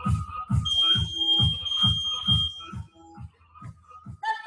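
A single high electronic beep lasting about two seconds, over electronic workout music with a steady beat. It is an interval timer signalling the end of a Tabata work interval.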